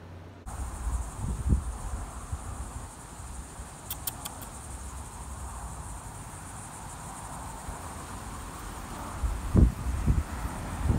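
A steady, high insect drone, typical of crickets in summer grass, starts about half a second in. Dull low rumbles on the microphone are the loudest sounds, a little after a second in and again near the end.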